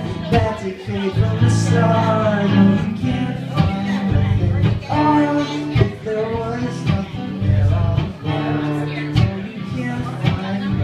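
Live solo acoustic guitar and male vocal: a strummed acoustic guitar with a man singing over it.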